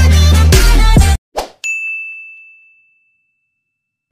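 Outro music with a heavy bass beat that cuts off abruptly about a second in, followed by a short whoosh and a single bell-like ding that rings out and fades over about a second: the sound effects of an animated subscribe button.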